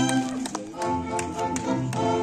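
Live string ensemble of violins and double bass playing a serenade, sustained bowed notes over a steady pulse of short, sharp taps about four a second.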